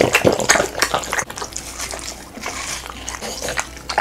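Two French bulldogs biting and chewing juicy watermelon, close to the microphone: irregular wet crunches and slurps, densest in the first second or so, then sparser.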